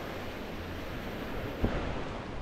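Small waves breaking and washing up onto a sandy beach, with wind buffeting the microphone. A brief thump near the end.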